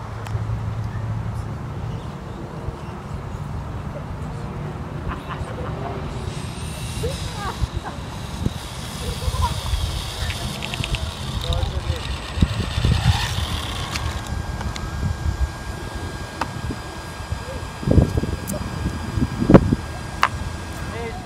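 Electric RC drag car on a Tamiya FF03 chassis running a pull. Its motor and stock gears give a high-pitched whine that rises in and holds for several seconds, over a steady wind rumble on the microphone. A few sharp knocks come near the end.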